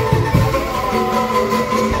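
Angklung ensemble playing music: shaken bamboo tubes sounding held notes over a low, pulsing beat.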